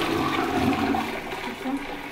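Toilet flushing: a rush of water that is loudest at the start and tails off over about two seconds.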